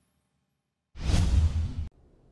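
A transition whoosh sound effect with a deep low end starts about a second in, swells, and cuts off abruptly just before the end.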